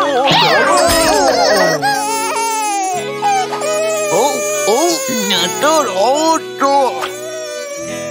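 A voice crying and wailing in high, swooping sobs over steady background music.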